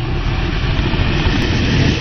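Loud, steady deep rumble, an intro sound effect under the title cards.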